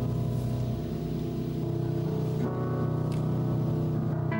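Music from a live recording: slow, sustained piano chords that ring on, changing to a new chord about two and a half seconds in.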